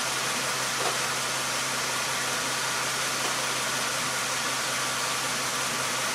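Car engine idling steadily, a constant low hum under an even hiss.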